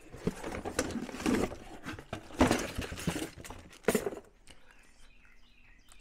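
Irregular rustling, knocking and clatter of someone rummaging for and picking up a brake caliper, over roughly the first four seconds.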